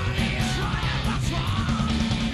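Rock band music: electric guitar, bass guitar and drums playing together at a steady, loud level.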